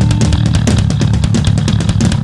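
Heavy punk/metal band recording: distorted electric guitar and bass over fast drumming with cymbals.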